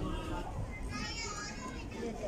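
Background voices of people and children chattering, with a high-pitched child's voice calling out about a second in, over a low steady rumble.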